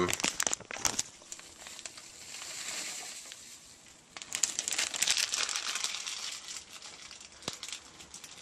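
Crinkling plastic mealworm packaging being handled as mealworms in bran are tipped out. It comes in spells: a few clicks at the start, a softer rustle, then a denser crackling stretch from about four to six and a half seconds in.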